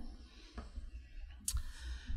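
Microphone handling noise during a speaker changeover: low thumps and a sharp click about one and a half seconds in.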